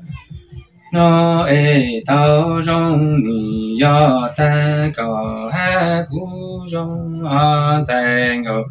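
A man singing unaccompanied-style long phrases that hold and bend in pitch, separated by short breaths. It begins about a second in, after a brief pause.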